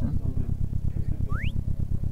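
Synthesized car-engine sound, a low pulsing rumble like a sports car. A single short synthesized bird chirp rises sharply in pitch about a second and a half in.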